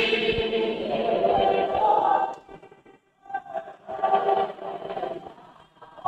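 A group of voices singing together in chorus. The singing dips briefly about three seconds in, then resumes.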